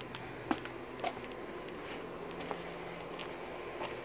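Footsteps on a concrete patio, a few short sharp clicks about half a second and a second in, over a faint steady hum.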